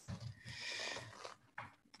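Faint noise on a video-call microphone for about a second and a half as it is moved closer, with a short blip near the end.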